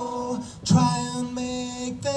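A live song: a singer holding long, steady notes, with a brief dip and a new note starting about two-thirds of a second in.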